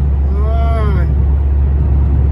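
Steady low road rumble of a car driving through a highway tunnel, heard from inside the cabin. About half a second in comes one short wordless voice sound that rises and then falls in pitch.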